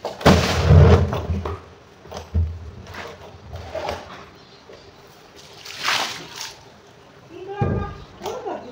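Water gushing and splashing out of a large plastic drum tipped onto a wet concrete floor, loudest in the first second with a heavy thud. Smaller splashes and knocks follow as the drum is tilted again, about two seconds in and again near six seconds.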